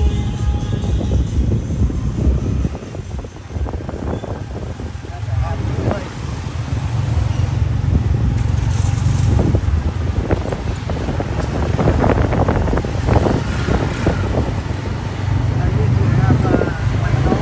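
Low steady rumble of a moving motorcycle-pulled tuk-tuk and street traffic, heard from the open carriage, with voices in the background. Music fades out near the start.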